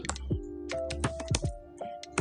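Typing on a computer keyboard: a quick, irregular run of keystrokes entering a line of code. Soft background music with held notes plays underneath.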